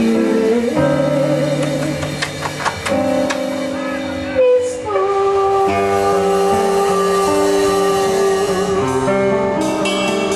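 Live acoustic band music: a woman singing a song into a microphone over a strummed acoustic guitar and a drum kit, with a long held vocal note in the second half.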